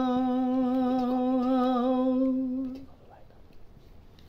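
A man's voice holding one long sung note at the end of a line of a Gojri bait folk verse, steady in pitch with a slight waver; it fades out a little under three seconds in, leaving a quiet room.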